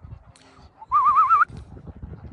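A short, loud warbling whistle about a second in, wavering rapidly up and down in pitch and rising slightly over about half a second. Faint low rustles and footfalls run around it.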